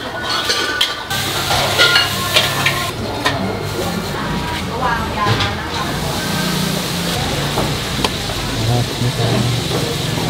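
Food-stall bustle: dishes and metal utensils clinking as food is spooned onto a plate, over a steady hiss, with voices faint in the background.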